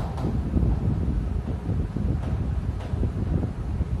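Steady low rumble of air buffeting the microphone, with a few faint strokes of chalk writing on a blackboard.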